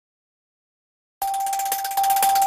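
Silence, then about a second in the channel's outro ident jingle begins: one steady held tone over a bright, fluttering wash of sound.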